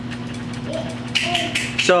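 Light metal clicks from the cylinder hand of a Heritage Rough Rider .22 revolver being tapped with a fingertip, knocking against the back wall of the frame; its spring has snapped off, so the hand flops loose. The clicks come in a quick cluster between about one and two seconds in.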